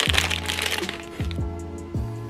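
Plastic popsicle wrapper torn open, a crackling rip lasting about a second. Background music starts at the same moment and carries on underneath.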